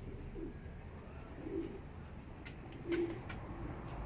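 A pigeon cooing: three low, soft coos about a second and a half apart, over a steady low rumble, with a few sharp clicks in the second half.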